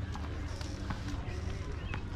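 Faint voices with a few scattered light knocks over a low steady rumble.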